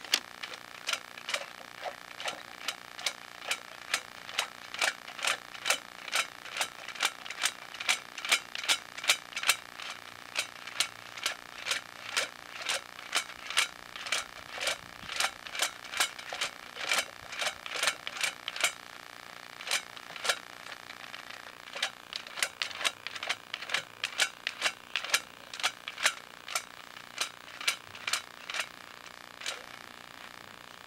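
Sewer inspection camera on its push cable being worked through a drain trap: an even run of sharp scraping clicks, about two or three a second, with a pause of about two seconds some two-thirds of the way in.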